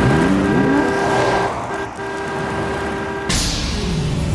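Cartoon sound effects: a zooming dash sound with pitch glides as small figures run, then a steady held music chord that cuts off abruptly near the end.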